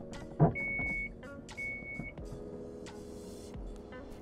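Power liftgate of a Dodge Grand Caravan being opened: a sharp thump about half a second in as it unlatches, then two beeps of the warning chime, then the liftgate's electric motor running as the hatch rises.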